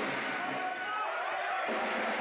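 A basketball bouncing on a hardwood court, with voices echoing in the gym.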